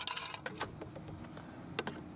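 Light plastic clicks and rattles as the snap-on faceplates of a Ring doorbell are handled and tried against the doorbell: a small cluster at the start, a couple about half a second in and two more near the end.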